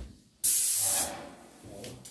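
Graco airless paint sprayer gun on an extension pole releasing a burst of paint: a loud hiss that starts suddenly about half a second in, holds for about half a second, then fades away.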